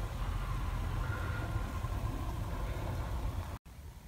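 Steady low rumble with a faint hiss, cut off suddenly about three and a half seconds in.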